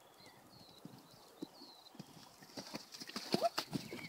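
Hoofbeats of a Fjord horse cantering on a sand arena, growing much louder and closer in the second half.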